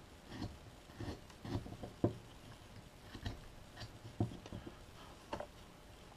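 Carving knife taking small slicing cuts in a wooden figure: a series of short, irregular cutting clicks and scrapes, about ten in six seconds.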